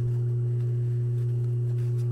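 Steady low electric hum, one unchanging tone with a fainter higher overtone, from an industrial sewing machine's motor running idle while no stitching is done.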